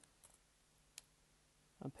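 A single short computer mouse click about a second in, otherwise near silence: room tone.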